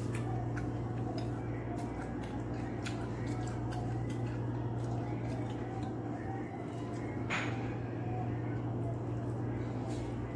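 Fingers mixing shredded chayote in a stainless steel bowl, making small soft clicks and rustles over a steady low hum. A brief louder rustle comes about seven seconds in.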